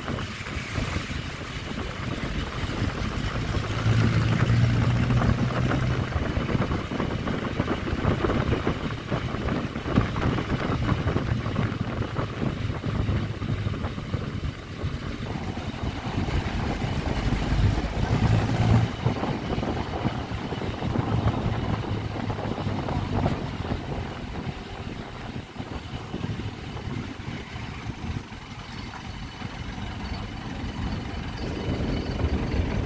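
Engine and road noise of a vehicle driving along a road, heard from its side window, with wind rushing at the microphone. The engine's low hum grows louder about four to six seconds in and again around eighteen seconds.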